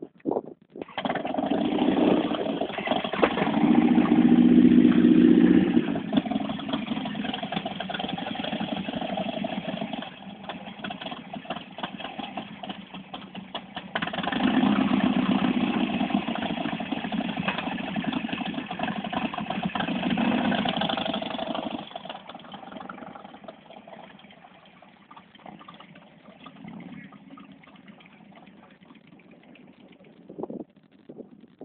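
Motorcycle engine starting about a second in and running, swelling louder with revs several times, then falling away after about 22 seconds.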